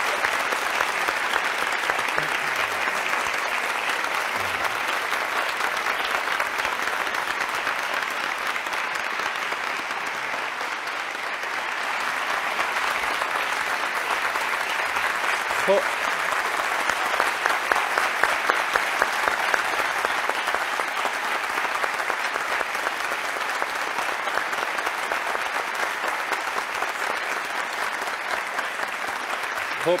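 Studio audience applauding steadily for a long time, a dense even clapping that holds its level throughout and eases slightly for a moment partway through.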